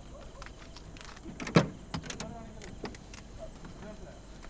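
Clicks and light knocks inside a vehicle's cabin, with one sharp, loud knock about a second and a half in, over a steady low hum.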